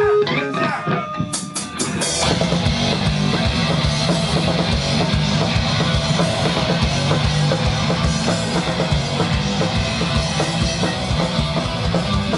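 Live hardcore punk band: after four quick clicks of a drumstick count-in, the full band starts a song about two seconds in, with loud electric guitar and fast, driving drums.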